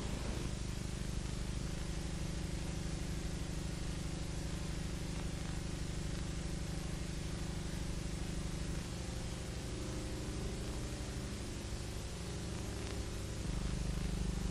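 A steady low hum with a faint hiss over it, changing in tone about nine seconds in and again near the end.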